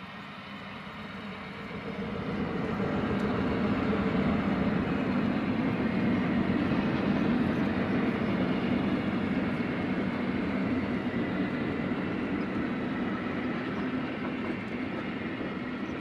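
A passing train rolling on rails: a steady rumble that builds over the first two seconds and then holds.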